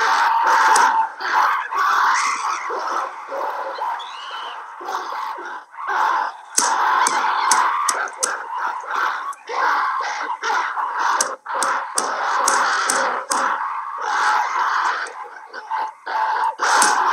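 Film soundtrack of a band of ape-men screaming and hooting over one another, in irregular overlapping cries, with a few sharp clicks.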